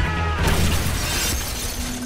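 Film car crash: a man's yell breaks off about half a second in as a Nissan Fairlady Z hits another car, with a loud smash of crunching metal and shattering glass, then debris clattering as it fades, over music.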